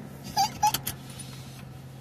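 Steady low hum inside a stopped car's cabin, with two short vocal sounds and a few light clicks about half a second in.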